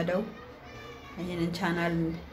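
A voice singing long, held notes. One note ends just as the sound begins, a quieter stretch follows, and a second long note comes in a little past halfway.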